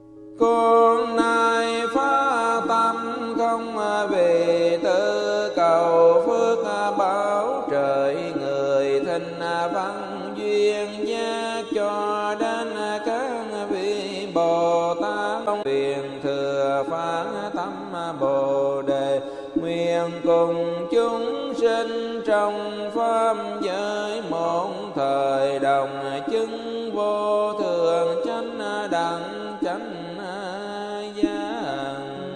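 Vietnamese Buddhist sutra chanting: a melodic chanting voice with musical backing over a steady low drone, coming in abruptly about half a second in.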